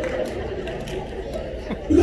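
Low murmur of many people chattering.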